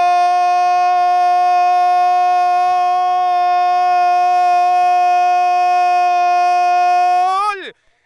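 Football commentator's goal cry: one long, drawn-out "Gooool!" in Spanish held on a steady pitch, falling away and stopping shortly before the end.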